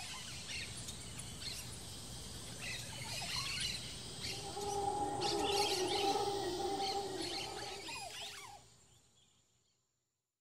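Tropical rainforest ambience: birds calling and chirping over a steady high-pitched hum, with a lower, wavering, drawn-out call for a few seconds in the middle. The sound fades out shortly before the end.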